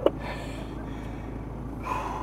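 Toyota Prado 4WD idling, a faint steady low rumble heard from inside the cabin, with a brief faint voice sound near the end.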